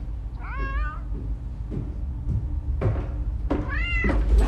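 A cat meowing twice: a wavering meow about half a second in and a rising one near the end, over a low steady hum.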